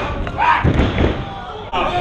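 Dull thuds of wrestlers' bodies and feet on a wrestling ring's canvas in the first second, with voices shouting over them.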